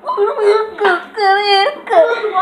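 A child's high-pitched, wordless vocalizing in about three drawn-out, wavering notes, like a whine or a sung wail.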